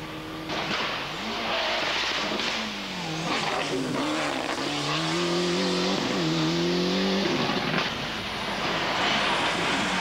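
A rally car's engine at full throttle on a stage, its note climbing and dropping several times as it accelerates and changes gear. The engine note stops about seven seconds in, leaving road and wind noise.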